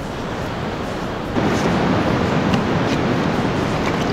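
Steady noise of wind and beach surf, which gets louder about a second and a half in, with a few faint clicks.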